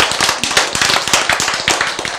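Audience applause: many people clapping at once, dense and irregular, easing slightly near the end.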